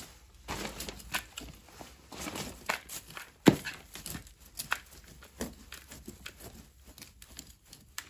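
Small hand trowel digging and scraping into loose potting soil in a plant pot: irregular scratchy, crunching strokes with one sharper knock about three and a half seconds in.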